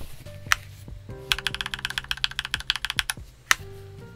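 Keys of a Mistel MD600 Alpha split mechanical keyboard being pressed: one click, then a fast run of keystrokes lasting about two seconds, and a single louder click near the end, as the brightness key combination is tapped repeatedly to raise the backlight.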